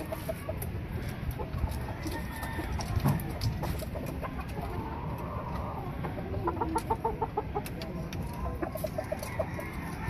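Roosters clucking, in quick runs of short repeated notes about midway through and again near the end.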